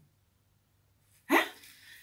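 Near silence for about a second, then a woman's single short, rising exclamation, "Huh?"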